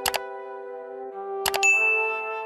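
Mouse-click sound effects, a quick double click at the start and another about a second and a half later, the second followed at once by a bright bell-like notification ding, over soft sustained background music.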